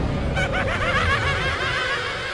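A high, cackling laugh made of many quick rising and falling notes, over a low rumble that fades away during the laugh.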